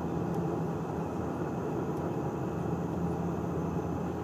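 Cabin noise of a propeller aircraft in flight, heard from inside: a steady drone with a low engine and propeller hum.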